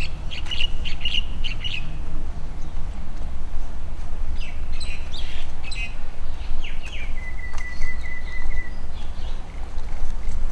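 Small birds chirping in quick bursts of short calls in the first two seconds and again around the middle, then a thin, steady whistled note held for about a second and a half. A low rumble runs underneath.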